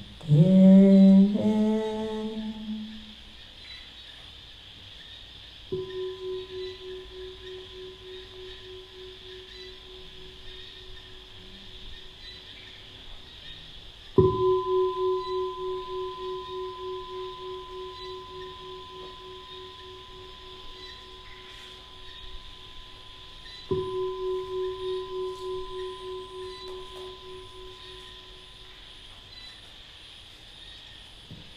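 A woman's chanting voice ends a phrase in the first two seconds. Then a singing bowl is struck three times, about nine seconds apart. Each strike rings on in a long, wavering tone that slowly fades, and the middle strike is the loudest.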